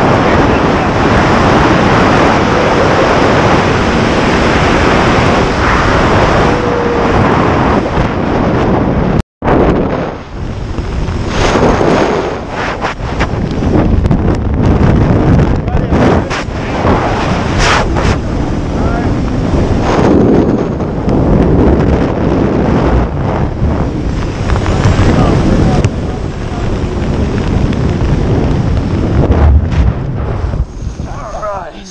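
Heavy wind rushing over the microphone of a skydiving instructor's handheld camera during a tandem parachute descent. It is steady and dense for the first nine seconds, cuts out for an instant, then comes back uneven and gusty.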